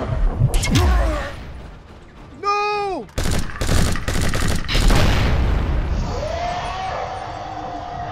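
A short falling shout, then a burst of rapid gunfire lasting about two seconds, then a long held yell.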